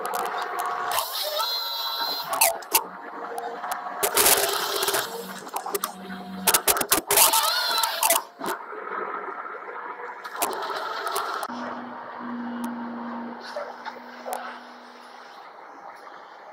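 A Komatsu timber harvester head at work, its built-in chainsaw cutting through a pine trunk with repeated sharp cracks and knocks of wood and a whining saw and machine. A steadier low machine hum follows in the second half.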